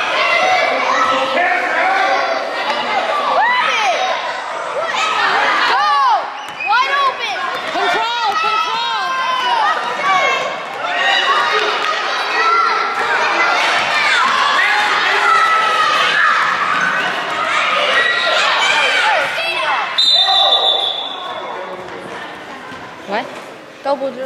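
Spectators and players in a reverberant gym shouting and calling out over a youth basketball game, with a basketball bouncing on the hardwood floor.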